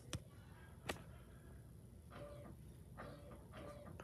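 Near silence: room tone, with two faint clicks in the first second and a few soft, faint sounds later.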